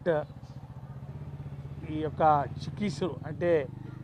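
An engine running steadily underneath a man's speech, a low hum with a fast, even pulse that grows a little stronger about a second in.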